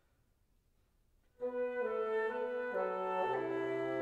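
Flute and bassoon begin playing together suddenly about a second and a half in, after near silence: sustained notes changing in steps, the bassoon's low line stepping downward beneath the flute.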